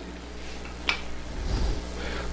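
Room tone: a steady low hum, with one faint short click about a second in.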